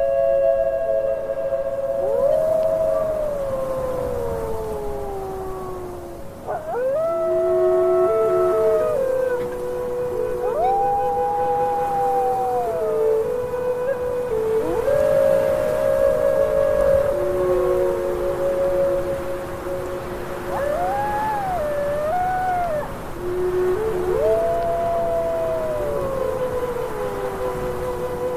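Wolves howling: long overlapping howls, one after another, each rising quickly, holding, then sliding down in pitch, with a few higher voices joining in partway through.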